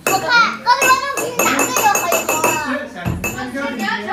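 Children's voices, chattering and laughing, with light clicks and rattles mixed in.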